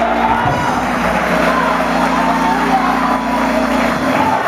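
Gospel music in a church: a chord held steadily under the choir's and congregation's voices, with crowd noise over it.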